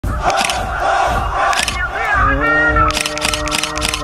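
Vocal music: a chorus of voices chanting, moving into a long held note about halfway through, with quick noisy swishes above it.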